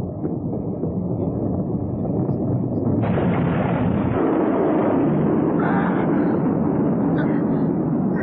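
Animated-film explosion sound effect: a continuous rumbling blast as comets burst apart in space, getting louder and harsher about three seconds in.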